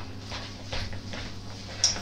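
A utensil stirring a thick mashed-potato mixture in a glass mixing bowl: soft, irregular knocks and scrapes against the bowl.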